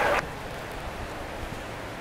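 Steady outdoor background hiss with no distinct events. The last moment of a track announcer's race call cuts off just at the start.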